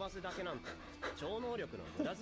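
Subtitled anime dialogue playing back: a character's voice speaking lines in Japanese, over a faint steady low hum from the show's soundtrack.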